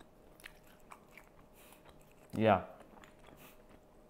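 Faint mouth sounds of someone chewing a mouthful of caviar, with a few small wet clicks, before a short spoken "yeah" a little past halfway.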